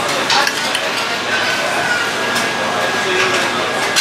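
Café dining-room noise: a steady hiss with a few short clinks of cutlery and dishes, and a fork on a china plate.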